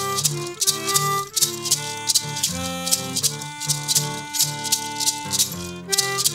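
Acoustic blues instrumental: harmonica playing held, sliding notes over a strummed acoustic guitar, with a hand shaker keeping a steady beat.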